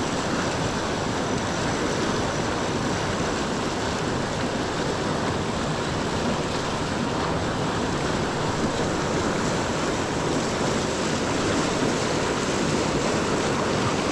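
Small, fast river running over rocks in whitewater riffles: a steady rushing of water.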